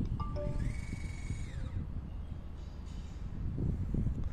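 Leica TS16 robotic total station's servo motors whining as the instrument turns itself to a stored target: a few short beeps, then a whine that rises in pitch, holds steady for about a second and falls away. The turn shows that the entered target name is correct. Steady low wind rumble on the microphone underneath.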